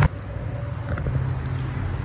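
A steady low mechanical hum, with a sharp click at the start.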